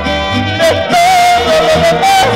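A mariachi band plays live with violins and trumpet, a deep plucked bass line underneath. A male voice sings a long held note with a wavering vibrato.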